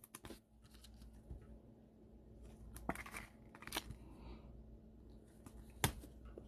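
Quiet handling of trading cards: a few soft clicks and slides as cards are flipped and set down on the table, the sharpest tap just before the end.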